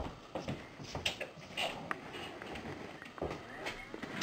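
A few irregular soft footsteps and light knocks, with small clicks, over a quiet studio room.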